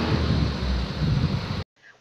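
A light truck's engine idling beside the microphone with steady outdoor noise; the low rumble cuts off suddenly about one and a half seconds in.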